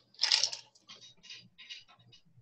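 Mouth sounds of a person drinking: a louder wet swallow near the start, then a few short, soft lip and mouth noises about every half second.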